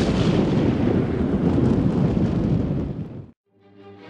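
A loud, explosion-like noise effect that starts abruptly, runs for about three seconds and cuts off. Soft music starts near the end.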